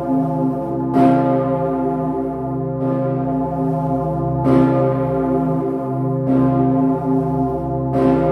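The Pummerin, the roughly 20-tonne bell of St. Stephen's Cathedral, cast in 1951 by the St. Florian foundry and tuned to C0, ringing. Its clapper strikes about every second and three-quarters, every other stroke stronger, over a deep, many-toned hum that rings on without a break.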